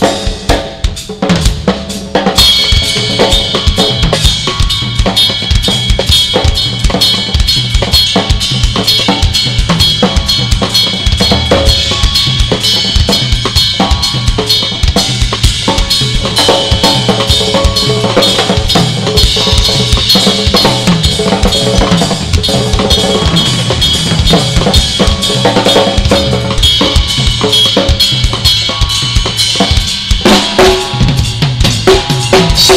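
Two acoustic drum kits, one a Tama, played together in a fast improvised drum duet: dense bass drum, snare and tom strokes. Cymbals join about two seconds in and keep ringing over the drums.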